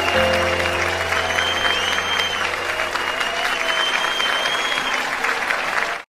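Studio audience applauding right after a song ends, with the last held notes of the backing music lingering underneath and a low bass note dying away about a second and a half in.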